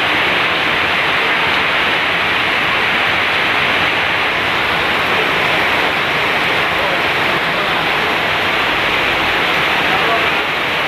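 Heavy rain pouring down in a steady, loud hiss.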